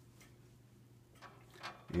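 Quiet room with a low steady hum and a few light clicks in the second half; a man's voice starts right at the end.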